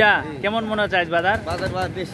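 Men's voices talking at close range, several men speaking in turn with no pause.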